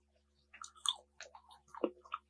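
Close-miked bite into a chocolate-coated ice cream bar: the hard chocolate shell cracks in a quick run of crisp crackles and clicks, with chewing mixed in. It starts about half a second in and is loudest near the end.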